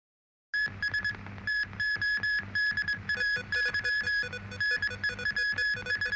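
Electronic news-programme theme music, starting about half a second in: a pulsing synthesizer tone repeating in a quick, steady rhythm over a sustained low bass.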